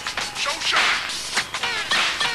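Vinyl record scratching on a turntable: a sampled sound is dragged back and forth under the hand in quick strokes, each a sweeping rise or fall in pitch.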